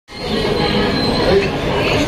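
Two steel spatulas scraping and chopping ice cream across a chilled stone slab: a steady metallic scrape with a thin high squeal.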